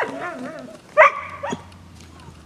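Collies barking and yelping inside a wooden doghouse: a wavering, whining yelp at the start, then a loud, sharp bark about a second in and a shorter one about half a second later.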